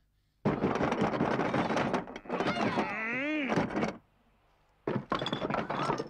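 Cartoon sound effects of a sudden attack: a loud, noisy clatter for about a second and a half, then a wavering pitched wail that dips and rises, and another loud burst of clatter near the end.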